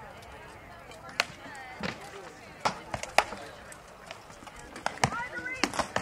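Rattan swords striking shields and armour in heavy armoured combat: a series of sharp cracks at irregular intervals, the loudest about three seconds in.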